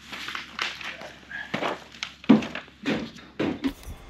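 Irregular knocks and clinks of metal grommet-setting tools being handled and struck on the shop floor, about seven or eight in all, the loudest a little past halfway.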